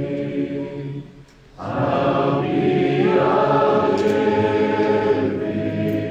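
Large congregation singing a slow hymn together, many voices holding long notes, with a brief breath pause between lines about a second in.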